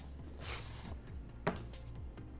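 Cardboard outer sleeve sliding off a smartphone box: a brief papery scrape about half a second in, then a single sharp tap about a second and a half in, over quiet background music.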